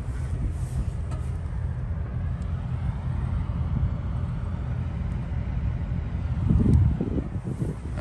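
Steady low rumble of vehicle noise, swelling louder for about a second near the end.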